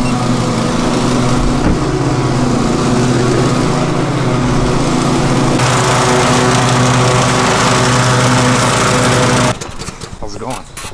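Cub Cadet riding lawn mower running steadily while mowing, its sound growing brighter about halfway through and cutting off abruptly just before the end.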